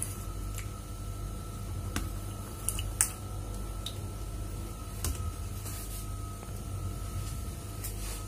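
Soft squishing of set grass jelly being scooped with a metal spoon from a plastic tub and dropped into a cup, with a few light clicks of the spoon against the container.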